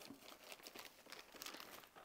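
Faint crinkling and rustling of gift-wrapping paper being handled.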